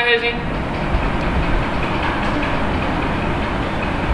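Steady rushing background noise with a low rumble underneath, unbroken and without clear strokes or tones.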